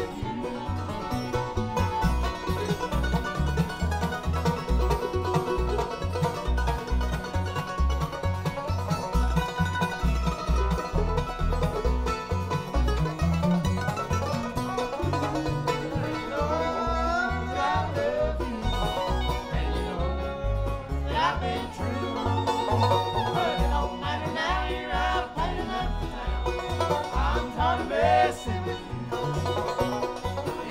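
Live bluegrass band playing: banjo rolls and mandolin, acoustic guitar and fiddle over a steady plucked beat from an upright bass.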